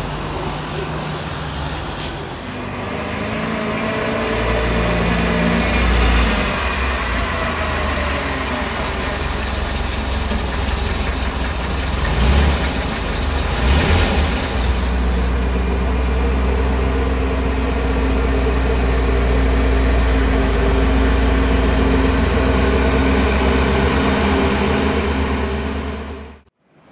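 MGB sports car engine running at low speed, rising a little in pitch about four to six seconds in, then settling into a steady idle for the last ten seconds or so.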